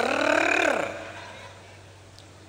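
A man's voice draws out a word that falls in pitch and ends a little under a second in. A pause follows, with only a faint steady hum.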